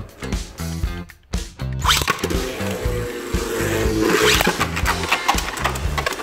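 Background music with a steady beat. Under it, two Beyblade Burst tops, Vanish Bahamut and Vanish Longinus, spin against each other in a plastic stadium, giving a whirring scrape with light clicks from about two seconds in.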